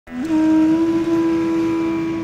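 Background music opening on one sustained low note that steps up slightly about a quarter-second in and is then held steady.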